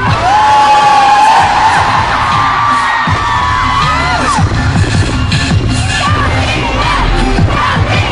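Concert crowd of fans screaming and shrieking, many high cries overlapping and thickest over the first few seconds. A pop track with a heavy low beat plays underneath.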